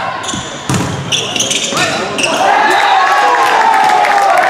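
A volleyball struck once with a sharp knock, about a second in, amid high squeaks of sneakers on the hardwood gym floor. After about two seconds, people start shouting in long, sustained calls.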